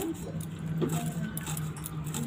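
Neem leaves being sliced finely against the fixed curved iron blade of a boti: a run of quick, crisp snips. A steady low hum runs underneath.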